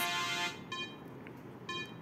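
A pause in the song: the last note dies away, leaving a low hiss, then two short high electronic beeps about a second apart.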